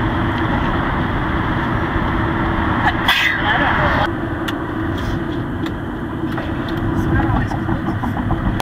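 Steady road and engine noise inside a moving car's cabin, with a brief sharp burst of noise about three seconds in.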